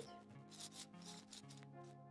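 Faint, quick strokes of a spoolie brow brush rubbing through eyebrow hairs set with wet brow soap, several strokes a second.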